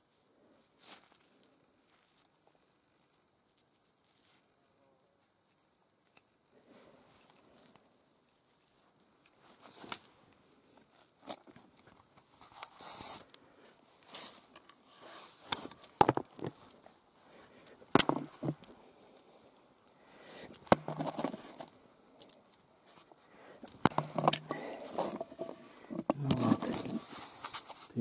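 Quartz rocks knocking on stone and loose quartz rubble crunching as the blocks are handled and shifted, with two sharp knocks about two seconds apart past the middle and thicker crunching near the end. The first several seconds are near silence.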